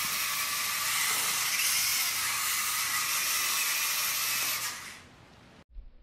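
VEX EDR robot's small electric drive motors and wheels running as it drives through a PID-controlled turn: a steady hiss with a faint whine. It fades out about five seconds in.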